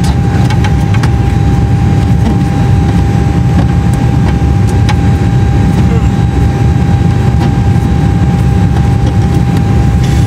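Steady low rumble of running aircraft equipment with a constant thin whine above it, and a few faint clicks.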